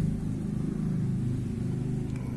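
A steady low rumble, as of an engine running in the background.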